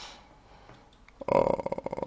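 A man's drawn-out hesitation sound "uh" in a creaky, rattling voice, coming in a little past halfway after a soft hiss and a short quiet pause.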